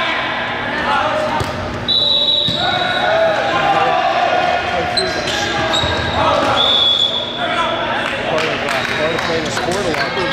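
Busy gym during a volleyball match: players' and spectators' voices echoing in the hall, volleyballs bouncing and being struck on the hardwood court, and several short, high, steady referee whistle blasts.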